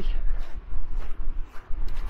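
Wind buffeting a handheld camera's microphone: a low rumble that rises and falls, with a few faint clicks.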